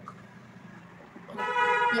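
A single loud, steady horn-like toot lasting under a second, starting about a second and a half in.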